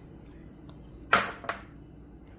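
Quiet room tone broken about a second in by one short, sharp knock and a lighter click half a second later. These are kitchen handling sounds as dates go into a blender jar of coconut milk.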